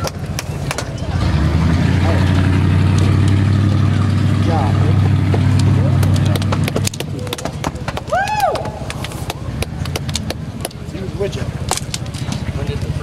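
A motor vehicle engine idles steadily for about six seconds and then drops away, amid voices and scattered sharp clicks. A brief rising-and-falling whoop comes about eight seconds in.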